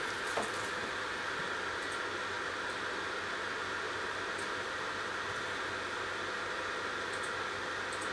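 Steady whirring hiss of a cooling fan on a diode laser engraver with the machine idle and the laser not yet firing, with a few faint ticks.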